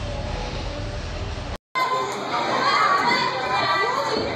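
Low background room noise, then a brief dropout about one and a half seconds in, followed by many children's voices chattering and calling out in a large gymnastics hall.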